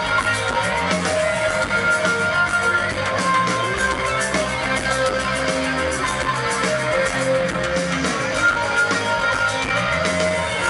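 Live rock band playing an instrumental passage, electric guitars and bass over drums, at a steady, unbroken loudness.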